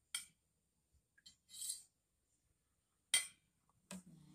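A metal spoon clinking against a ceramic bowl a few times, separate short clinks with quiet gaps between, the sharpest about three seconds in.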